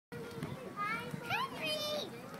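Young children's voices chattering and calling out, with a few high, rising calls.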